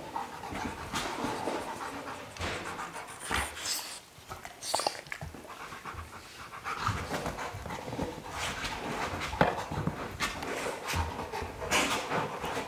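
A Rottweiler panting steadily, with a few sharp knocks and clicks as it mouths a hard plastic Jolly Ball.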